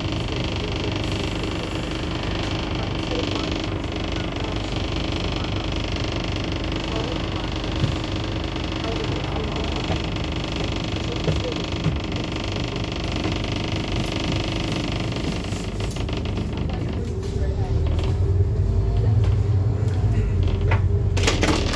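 Inside a Scania N230UD ADL Enviro 400 double-decker bus on the move: a steady drone of its diesel engine with road noise. For the last few seconds the engine gets louder, with a deeper hum.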